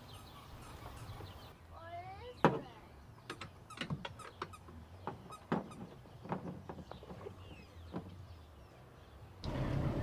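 Scattered faint clicks and light knocks of hands handling the brass hose fittings on a NAVAC refrigerant manifold gauge set, the sharpest about two and a half seconds in. A few soft chirping glides sound about two seconds in.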